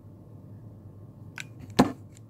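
A single sharp knock on a table as a hot glue gun is set down, with a faint click just before it, over a low steady hum.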